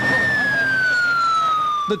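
Fire engine siren sounding as the engine speeds past, its single wail falling slowly and steadily in pitch.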